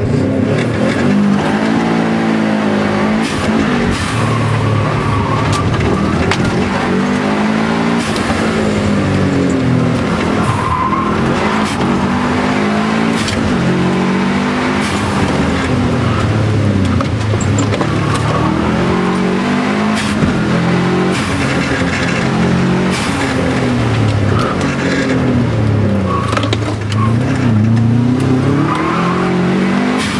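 Subaru Impreza WRX STI's turbocharged flat-four boxer engine heard from inside the cabin under hard driving, the revs climbing and dropping again every second or two as it accelerates, lifts and shifts gears.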